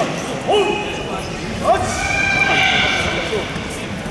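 People shouting during a karate kumite bout. There is a short call about half a second in, a sharper shout a little later, then a longer high-pitched call.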